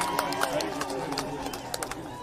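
Crowd voices talking over one another, with scattered sharp clicks several times a second that thin out toward the end.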